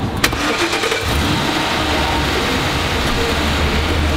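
A patrol car's engine starting about a second in and then idling with a steady low hum, after a sharp click near the start.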